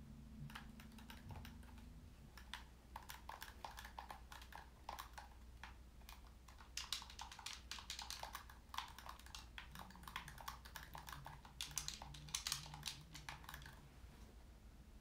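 Rapid, irregular clicking of small buttons pressed in quick runs, a typing-like clatter that grows busier in the second half.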